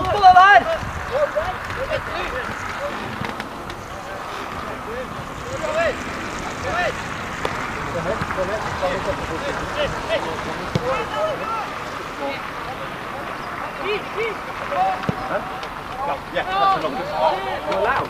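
Football-match shouting: a close "Go ahead!" right at the start, then scattered shorter calls from players and coaches across the pitch over a steady outdoor background hum.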